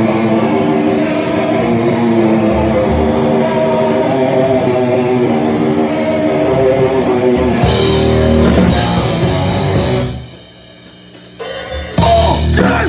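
Live hardcore punk band playing: electric guitar rings out alone at first, then the drums, cymbals and full band crash in a little past halfway. About ten seconds in, the band stops dead for a short, much quieter break before coming back in.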